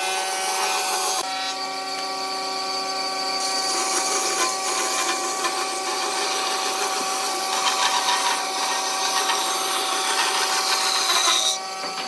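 Band saw running and cutting through a burl wood blank: a steady whine of motor and blade over the rasp of the cut. The sound shifts slightly about a second in and drops away near the end.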